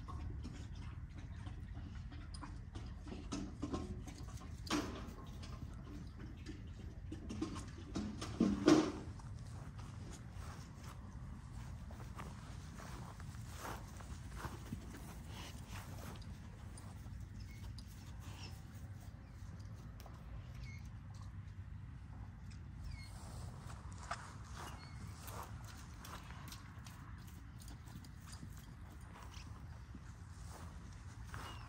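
An American bully dog moving about on grass close by, with scattered light clicks and rustles and two short louder sounds about five and nine seconds in, over a steady low hum.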